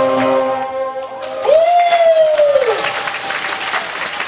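A violin performance with backing track ends on its last notes about a second in, and the audience breaks into applause. One loud long held note or call rises over the clapping and drops away at its end.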